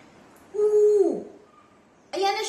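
A person's drawn-out "ooh" of delight, held on one high note for about half a second before falling away, as a banana-leaf cover is lifted off a tray of food.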